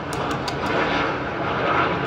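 A steady, loud, engine-like drone, with a few light clicks in the first second.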